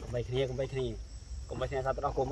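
A man's voice speaking in short phrases, with a pause about halfway through, over a faint steady high-pitched insect drone.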